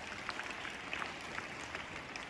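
Faint, scattered clapping from an audience: a light hiss with irregular small claps.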